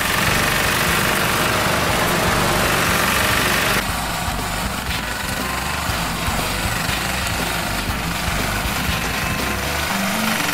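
Vermeer BP714 compressed earth block press running, a steady engine and machinery noise. The sound changes about four seconds in, when the hiss above it thins out.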